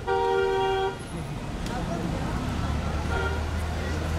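A vehicle horn sounds once, a steady chord of two or more notes lasting about a second, followed by street traffic noise with a low steady drone.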